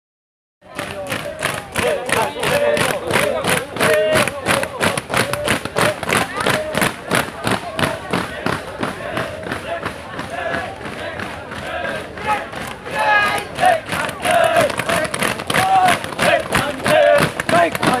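A squad of navy recruits jogging in step in boots, their footfalls making a quick, even beat, while their voices shout a chant together in time.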